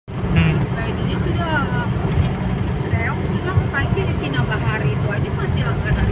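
Steady low road rumble inside a moving car's cabin, with people talking over it.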